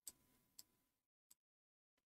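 Near silence with three faint computer-mouse clicks, spread over the first second and a half.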